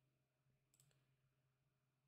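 Near silence, with one faint computer mouse click about a second in.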